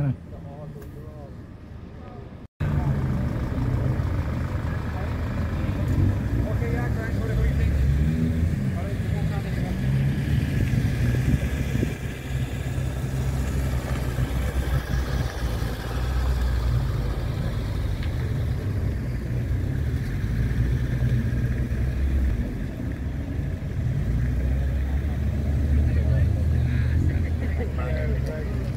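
Steady low engine rumble and road noise from inside the slowly moving Audi TT, window open, with street noise and voices coming in from outside.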